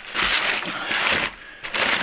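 Old newspapers rustling and crinkling as they are handled and shuffled through by hand, in two spells, the second one shorter.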